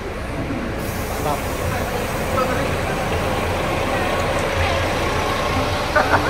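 Volvo B11R double-decker bus's 11-litre straight-six diesel running close by with a steady low rumble. An even hiss joins it about a second in.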